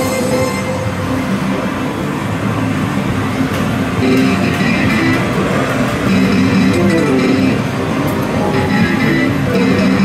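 Loud din of pachislot machine music and electronic jingles, with a few short clicks of a Juggler slot machine's lever and stop buttons as its reels are spun and stopped.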